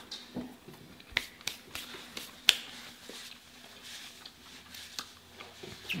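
Close-up mouth sounds of eating fried seafood: chewing with wet smacks and scattered sharp clicks, the loudest about two and a half seconds in.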